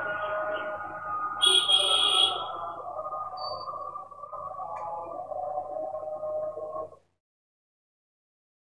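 A steady, slightly wavering pitched hum with several overtones that cuts off abruptly about seven seconds in. A brief, brighter higher sound rises over it about one and a half seconds in.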